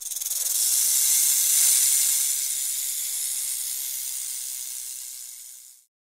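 Snake-hiss sound effect: one long hiss that swells over the first couple of seconds, then slowly fades and cuts off shortly before the end.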